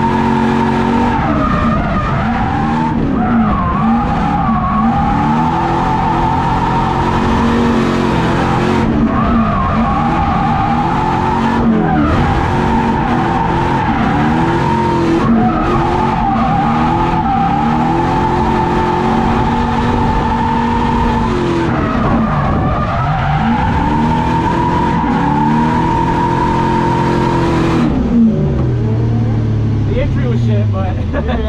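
LS V8-swapped BMW E30 drifting, heard from inside the cabin: the engine revs rise and fall again and again while the tires give a steady, high squeal. About two seconds before the end the squeal stops and the engine winds down as the car comes off the throttle.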